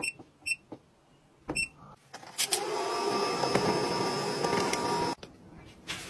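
Three short electronic beeps in the first second and a half. About two seconds in, a small appliance motor starts whirring steadily, then cuts off suddenly about three seconds later.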